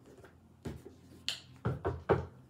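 A deck of tarot cards being handled and shuffled: a few short taps and clicks of the cards against each other and the table, with a brief swish of sliding cards about a second in.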